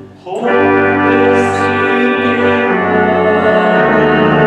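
Church organ playing a hymn in long, held chords, with a brief break between phrases just at the start.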